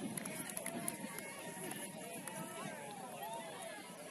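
Several players' voices calling and shouting at once across a grass sports field, indistinct and overlapping, over a steady hiss.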